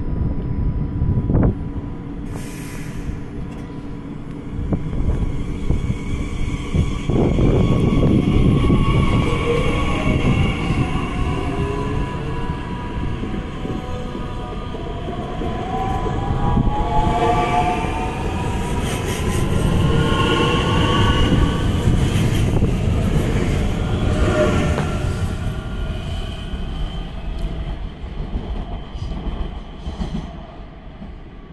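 DB class 442 (Bombardier Talent 2) electric multiple unit pulling away and passing close by. Its traction motors give several whines that climb steadily in pitch as it accelerates, over heavy wheel and rolling noise. The sound dies away near the end as the train leaves.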